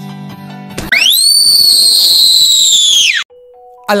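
Music plays for under a second, then a loud whistling sound effect with a hiss beneath it. It rises quickly in pitch, holds high for about two seconds, sags a little and cuts off suddenly. A faint steady tone follows.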